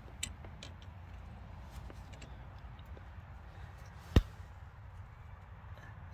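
Faint clicks and taps of the metal cover cap being screwed by hand back over the tractor's fuel screw, with one sharp knock about four seconds in, over a low steady rumble.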